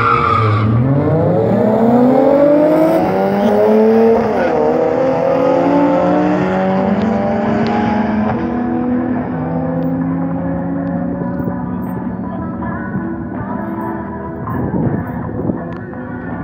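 Two cars launching together off a drag strip start line, a supercharged R53 Mini Cooper S and a Nissan 350Z, their engines revving hard and climbing in pitch. There is a short break in the rising note about four seconds in, and the sound then levels off and fades as the cars run away down the quarter mile.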